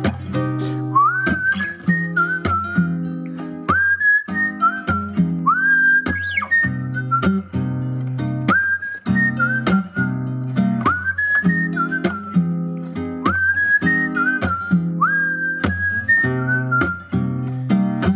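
A person whistling a melody over a plucked acoustic guitar: short whistled phrases, most beginning with an upward slide, come again about every two seconds while the guitar keeps playing chords beneath.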